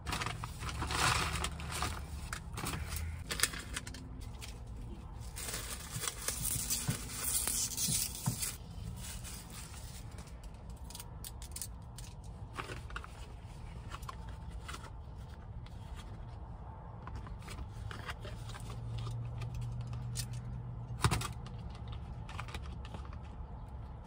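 Crinkling and tearing of food packaging handled by hand: two louder spells in the first eight seconds, then quieter scattered rustles and clicks.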